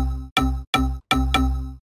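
A synth pluck sample pitched on C, played in Groove Agent SE. The same note is triggered five times, about three times a second, and each note is cut short by its amplitude envelope. The notes stop near the end.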